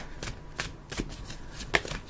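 Tarot cards being shuffled and handled: a string of light, quick card flicks and taps, with a sharper pair near the end.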